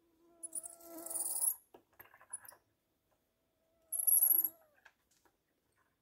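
Two drawn-out squeaks about three seconds apart from a rope and plastic bucket being hoisted into a tree, with a short rustle between them.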